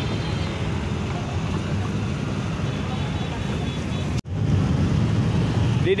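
Steady low rumble of idling vehicles in a stopped traffic jam. It drops out for an instant about four seconds in, then carries on slightly louder.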